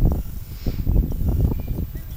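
Gusty wind buffeting the camera microphone, an uneven low rumbling that eases off near the end.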